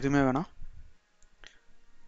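A man's narrating voice finishes a phrase in the first half second, then it goes quiet apart from one faint click about one and a half seconds in.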